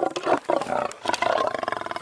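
A large wild animal calling loudly in a series of rough, pulsing roars.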